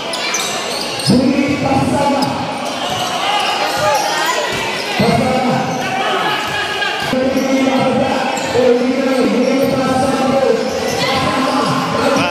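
A basketball bouncing on a concrete court as it is dribbled, with short thuds every second or so, under the steady chatter and shouts of a crowd of spectators.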